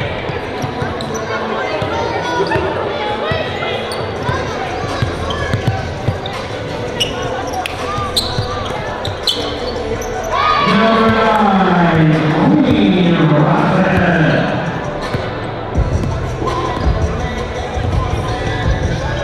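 Live basketball game sound in a gymnasium: a basketball bouncing on the hardwood court amid players' voices. About ten seconds in, a voice rises into a louder, long, gliding call for a few seconds.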